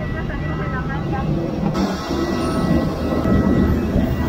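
Steady low roar of a parked airliner on the apron, with a thin high whine held throughout, and passengers' voices in the background.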